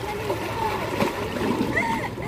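Seawater splashing as a person sitting in the shallows splashes it with her hands, loudest in the second half, with voices alongside.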